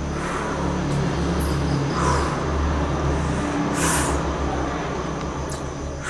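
A low, steady motor-vehicle engine rumble, with a brief hiss about four seconds in.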